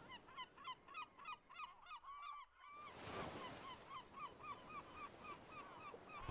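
Clay whistling pots tied to the sail ropes of a traditional Portuguese windmill hooting faintly as the sails turn, a quick run of short rising-and-falling whistles, about four or five a second. A short gap comes a little after two seconds, then a soft hiss joins about three seconds in.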